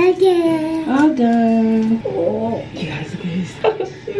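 A toddler's voice singing a few long held notes, with a quick rise in pitch about a second in, then shorter, softer vocal sounds in the second half.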